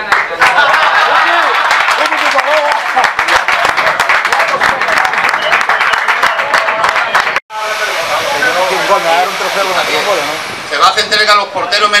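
A small group applauding, many hand claps with voices talking among them. After an abrupt break the clapping gives way to people talking, and near the end one man's voice over a microphone.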